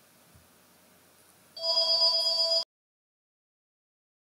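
Electronic ringing tone: a steady, rapidly trilling chord of several pitches that starts about a second and a half in, lasts about a second, and cuts off abruptly.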